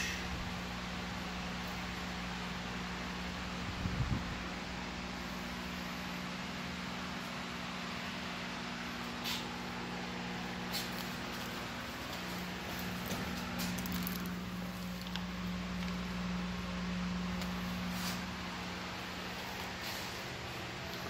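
Steady hum and hiss of running grow-room fans, with a low steady tone throughout. A soft knock comes about four seconds in, and a few faint clicks follow later.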